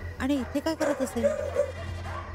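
A voice making a quick run of short, arching pitched sounds for about a second and a half, over a steady low hum.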